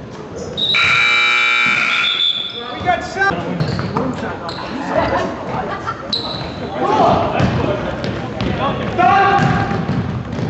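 A gym buzzer sounds one steady tone for about two seconds, starting about half a second in. Through the rest, a basketball bounces on the hardwood floor amid players' scattered shouts.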